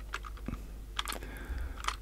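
Faint, irregular clicks of a computer keyboard and mouse as Blender shortcuts are pressed, the clearest about a second in and near the end.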